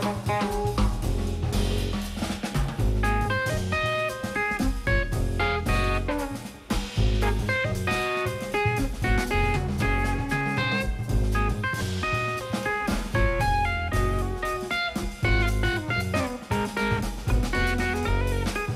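Live jazz: an electric guitar plays a single-note melodic line over a drum kit with cymbals.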